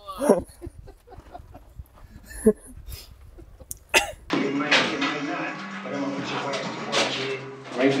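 A man's short exclamations and laughter over a low rumble. About four seconds in comes an abrupt cut to music.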